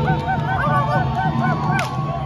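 Many short honking calls, overlapping at several a second, each rising and falling in pitch, with a sharp click near the end.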